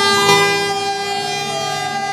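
A loud, steady held tone with many overtones, unchanging in pitch, with a second, lower tone joining about a third of a second in.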